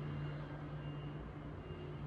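Faint, steady low hum with a light hiss: room tone.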